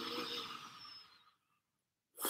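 A man's quiet, breathy exhale, fading out after about a second and a half.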